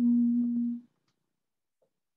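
A woman's hesitation hum, a held 'mmm' on one steady pitch for about a second, as she pauses over the answer. Faint clicks follow.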